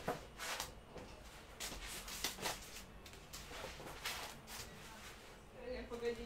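Faint, irregular puffs of breath and rustling from a person doing crunches on a foam exercise mat.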